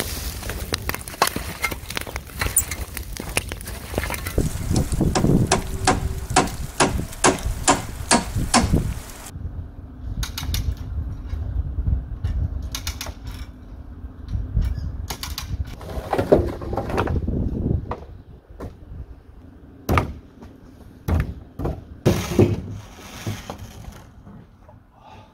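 A bonfire of branches crackling, with many sharp pops, for about the first nine seconds. Then scattered knocks and clatter of timber framing work, with a few sharp impacts near the end.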